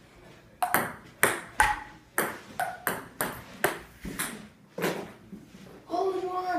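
A ping pong rally: the celluloid ball clicks sharply and alternately off the paddles and the table, about two hits a second. The rally stops near the end.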